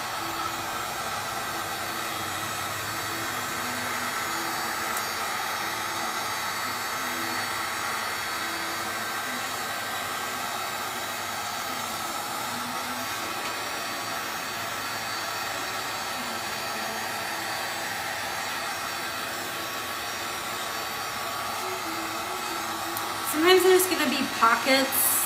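Heat gun blowing steadily with a faint whine, held over a panel to melt and level a layer of encaustic beeswax paint.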